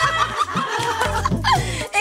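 Two people laughing loudly together in high, breathy peals. Background music with a deep bass line comes in under the laughter as it starts.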